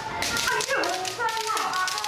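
Kendo practitioners giving short kiai shouts that drop in pitch, over a run of sharp clacks from bamboo shinai swords.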